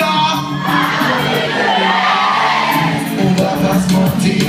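Pop music playing loud through a concert hall's sound system over a steady low beat, with the audience screaming and cheering over it.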